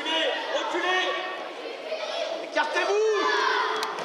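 Several high voices shouting and calling out across an indoor sports hall, with one long rising-and-falling call about three seconds in.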